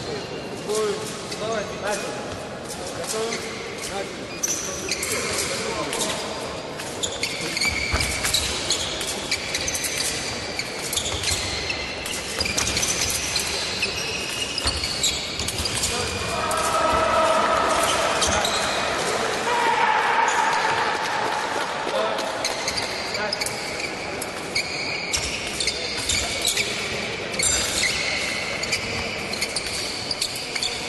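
Fencers' shoes squeaking and stamping on the piste in a large echoing hall. The electric scoring machine's tone sounds for a touch about 16 seconds in.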